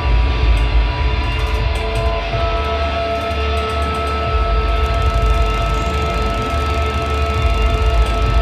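Live band music: electric guitar and synthesizer holding long sustained tones over heavy bass and drums.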